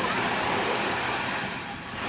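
Small waves washing onto a sandy shore, a steady rush of water that eases off a little near the end.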